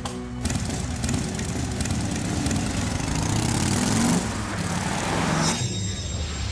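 Cartoon sound effect of motorcycle engines revving as the bikes pull away, the engine pitch rising about four seconds in, over background music. The engine noise cuts off suddenly near the end, leaving only the music.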